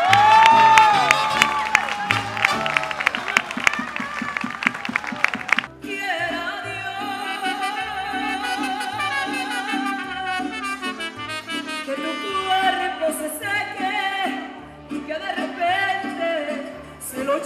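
Live mariachi music with singing: guitars strummed fast over guitarrón bass notes. About six seconds in the sound changes abruptly to a long wavering melody line held over the walking bass.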